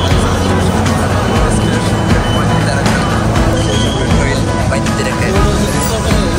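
Background music laid over the chatter of a crowd of people.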